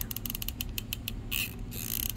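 Hot glue gun trigger being squeezed, its feed mechanism clicking: a quick run of clicks at first, then slower single clicks, with two short scraping sounds near the end.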